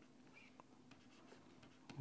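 Near silence, with faint light taps and scratches of a stylus writing on a pen tablet over a faint steady hum.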